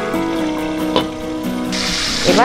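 Background music with held notes, a sharp click about a second in, and near the end hilsa fish heads frying in oil break into a loud sizzle as the glass lid comes off the pan.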